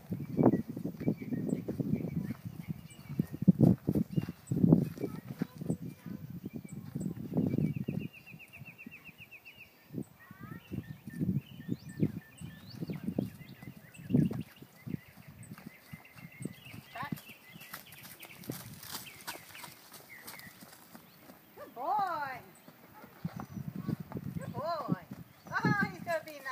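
A horse's hooves on dry dirt, walking and trotting in irregular dull thuds, thickest in the first eight seconds and sparser after.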